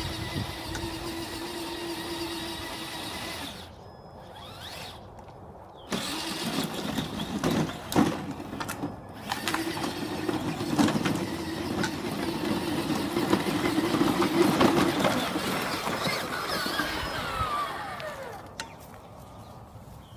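The two stock brushed electric drive motors of a radio-controlled Peg Perego Power Wheels Jeep, wired in parallel on a Traxxas Summit speed controller, whine through their gearboxes as it drives. The whine stops for about two seconds a few seconds in, then resumes with a couple of sharp knocks. It winds down with a falling pitch near the end.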